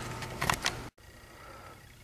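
Two quick clicks from the camera being handled, then the sound cuts off dead and faint room tone follows.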